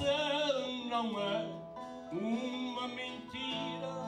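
Azorean cantoria: a man singing improvised verse with a wavering vibrato over acoustic guitar accompaniment. He sings two phrases with a short break about two seconds in.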